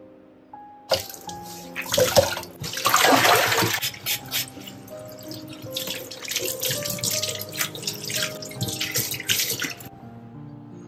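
Tap water running and splashing into a stainless steel sink as detergent-soaked cloths and a steel lid are rinsed and wrung out by hand. The water starts about a second in and is heaviest around three seconds in, with background music throughout.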